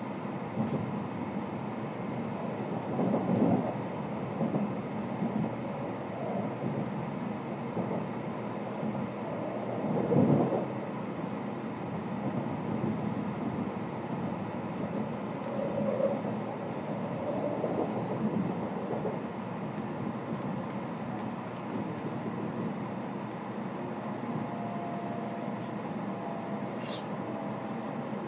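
Interior running sound of an N700-series Shinkansen car: a steady rumble with heavier swells about three and ten seconds in. A faint steady tone comes in near the end.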